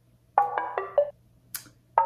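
Synth pluck notes from the Diva software synth: a quick run of about five short staccato notes at stepping pitches, then the phrase starts again near the end. The plucks are detuned, with their highs rolled off to sound duller and older.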